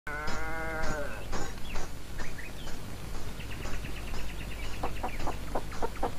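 A single quavering bleat, like a goat's, about a second long, followed by scattered short high chirps and a quick run of chirps, over a low steady hum.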